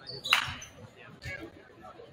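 Basketballs bouncing on a hardwood gym floor, a few dull thumps spread over the two seconds, with one sharp, loud sound about a third of a second in. A faint murmur of voices from the gym runs underneath.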